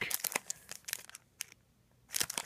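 Foil trading-card pack wrappers crinkling as they are handled, a run of small crackles that dies away about a second and a half in.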